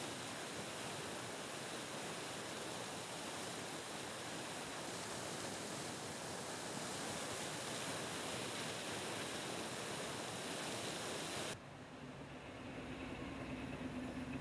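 Water gushing from a sheared fire hydrant, a steady rushing spray with water splashing onto the flooded pavement. Near the end it cuts off suddenly and a quieter, steady engine hum takes over, from a fire engine idling.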